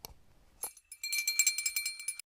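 Sound effect of a click, then a small bell jingling rapidly for about a second, the sound of a notification bell being rung.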